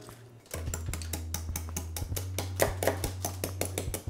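A serrated bread knife sawing into a block of ice: a rapid run of short scraping clicks starting about half a second in, over background music with a steady bass.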